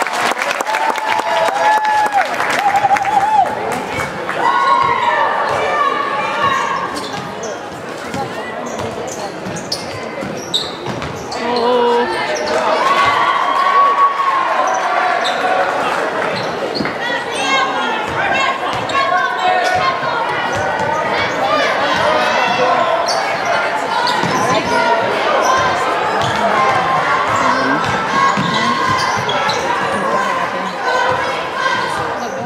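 A basketball being dribbled on a hardwood gym floor during a game, amid shouting and chatter from players and spectators, echoing in a large gymnasium.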